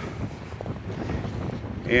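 Wind buffeting the microphone outdoors, a steady low rumble.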